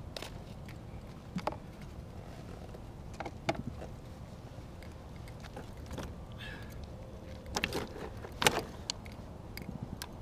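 Scattered short knocks and clicks from fishing line and a landed fish being handled in a kayak, loudest in a cluster near the end, over a steady low rumble.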